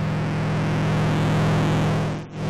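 Modular synthesizer drone: a steady low tone with a layer of hiss over it, swelling slightly in level partway through as the knobs are turned.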